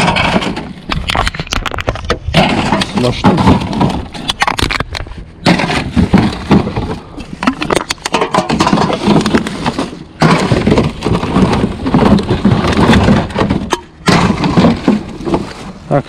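Hands rummaging through a recycling bin: plastic bags and clear plastic clamshell packaging crinkling and crackling, with aluminium drink cans clinking as they are picked out. The crackling runs densely, with brief lulls about two, five, ten and fourteen seconds in.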